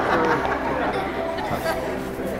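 A roomful of guests chattering and laughing, the hubbub gradually dying down.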